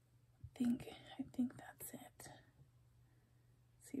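A woman's voice speaking quietly, half-whispered, for about two seconds near the start, then a pause before clearer speech begins at the very end.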